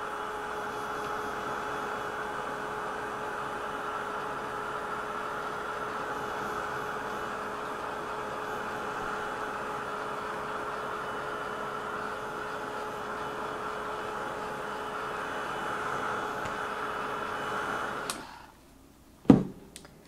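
Craft heat tool blowing hot air steadily with a motor hum, drying a layer of acrylic paint on card. It switches off near the end, and a sharp knock follows.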